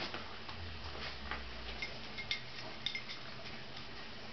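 Faint, scattered light ticks and small metallic clinks, a few over the few seconds, as a small dog moves about close by on carpet.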